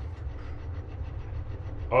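Steady low mechanical rumble with faint, fast, regular ticking over it.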